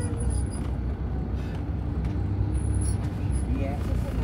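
A car in motion heard from inside the cabin: a steady low rumble of road and engine noise.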